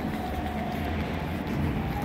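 Low, steady rumble echoing through an enclosed car park, with a faint thin steady tone for about the first second.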